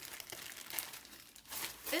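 Clear plastic garment bag crinkling and rustling in short, irregular crackles as it is opened and a dress is pulled out of it.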